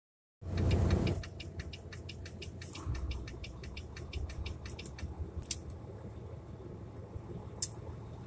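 Low steady rumble of an idling truck heard inside the cab, with a loud bump of handling noise just after the start and a quick run of light ticks, about five a second, for the first few seconds.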